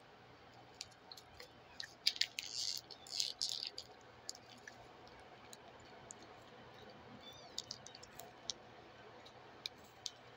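Faint wet mouth clicks and smacks of someone chewing a sticky meat stick close to the mic, with a short run of louder crackling about two to four seconds in.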